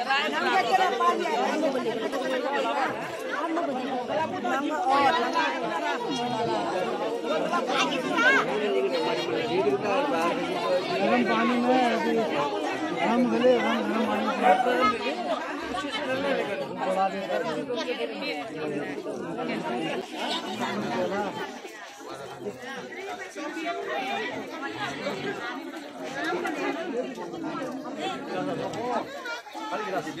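A crowd of many people talking at once, voices overlapping in a steady chatter that eases off somewhat about two-thirds of the way in.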